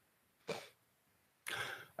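Two short, faint non-speech vocal noises from a person at the microphone: a brief one about half a second in and a longer one near the end, just before speech resumes. The rest is near silence.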